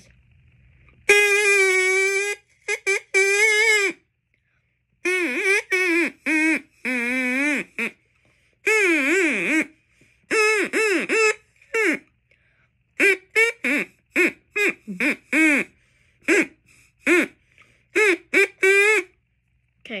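Drinking-straw reed whistle blown in a run of reedy notes: a few held for about a second, most short, several wavering and bending in pitch.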